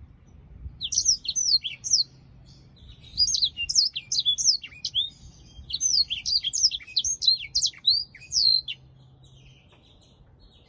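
Black-throated canary singing: three bursts of rapid, high, down-slurred twittering notes, lasting roughly one, two and three seconds, with short pauses between.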